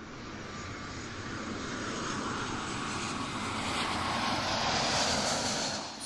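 Engines of an Airbus A330 twin-jet airliner coming in to land, a steady roar that grows louder over several seconds as the aircraft nears.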